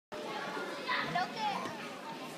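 A crowd of children chattering at once in a large hall, many high voices overlapping.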